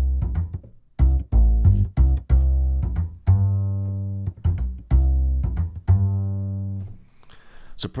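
A sampled acoustic upright bass (UJAM Virtual Bassist Mellow) plays a plucked bass phrase in C major. The notes start sharply and decay, some held for about a second, and the phrase stops about seven seconds in.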